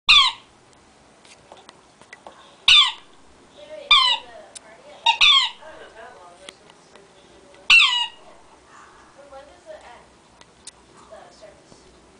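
Orange rubber squeaky toy squeaked by a Tibetan terrier biting down on it: about six short, sharp squeaks, each falling in pitch, at irregular gaps of one to two and a half seconds, two in quick succession just after five seconds in, the last about eight seconds in. Faint clicks of teeth on the rubber between squeaks.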